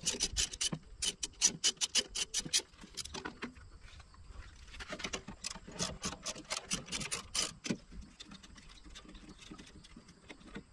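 Ratchet wrench clicking as 12 mm bolts are backed out: two runs of rapid clicks, with a lull of about a second and a half between them and only scattered small metal clicks near the end.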